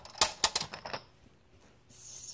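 A plastic Connect 4 disc dropped into the grid, clattering down the column in a quick run of sharp clicks within the first second, then quiet.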